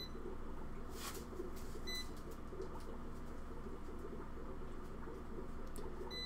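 A short, high electronic beep about two seconds in, over a steady low hum of room equipment, with a brief scuffing noise about a second in.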